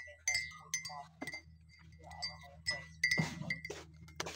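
Light clinks over a thin, high ringing tone that keeps sounding with small breaks, and a short rustle about three seconds in.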